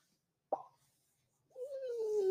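Near silence in a gap between speakers, broken by a single brief blip about half a second in, then a man's voice starting near the end.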